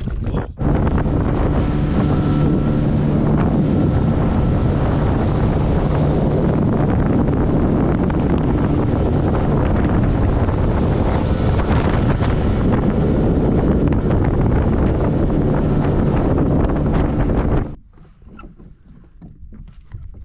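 Boat motor running steadily at speed, with wind on the microphone and water rushing along the hull. Just before the end it cuts off suddenly to a much quieter, faint background.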